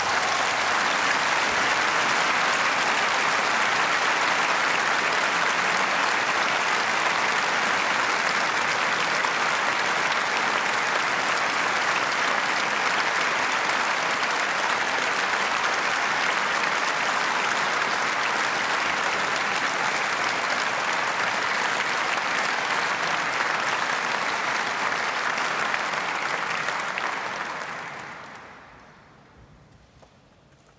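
Large audience applauding steadily, the clapping fading away near the end.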